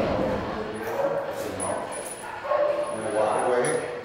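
A dog barking, with indistinct voices talking.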